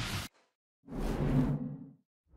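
Intro music cuts off abruptly, and after a short silence a whoosh sound effect swells for about a second and stops, part of an animated logo transition.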